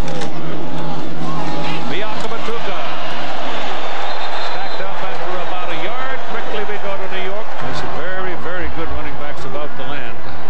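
Football stadium crowd noise: a loud mass of voices with individual shouts and yells rising through the play, over a steady low hum that drops away about three-quarters of the way through.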